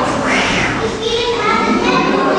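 Children chattering and calling out, with one higher child's call about half a second in, over other voices.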